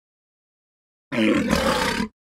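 Silence, then about a second in a man lets out a loud yell lasting about a second, cut off abruptly.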